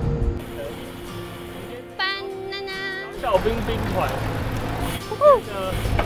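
Wind and riding noise on an action camera's microphone during a road-bike ride, a steady low rumble, with people's voices over it: a brief high-pitched wavering voice about two seconds in, then short exclamations, the loudest about five seconds in. Background music cuts off at the very start.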